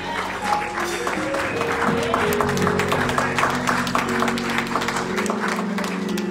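Live church music: held chords under a steady beat of sharp hits, hand claps and percussion.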